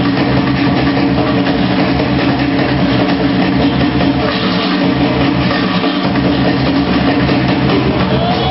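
Loud live band music with a drum kit playing throughout.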